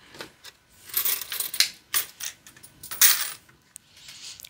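Coins, a handful of quarters, being dropped into a clear change jar, giving a series of separate metallic clinks. The loudest come about a second in and about three seconds in.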